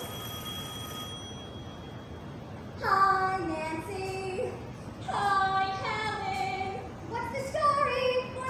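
Recorded show tune playing: young female voices singing in short phrases, coming in about three seconds in after a quiet stretch.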